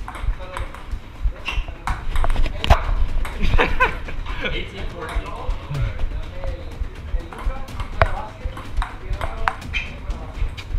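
Table tennis ball struck back and forth in a rally, sharp clicks off paddles and the table, with voices calling out from the players and onlookers, loudest a few seconds in.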